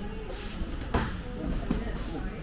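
A sharp smack of a strike landing in Muay Thai sparring about a second in, with a smaller hit near the end, over background voices and music.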